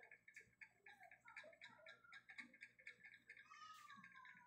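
Faint, rapid, even ticking, about six or seven a second, with a faint call that slides up and then down in pitch near the end.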